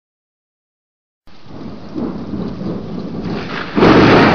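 Rain with rolling thunder, starting after about a second of silence and growing louder, with a sudden loud thunderclap near the end.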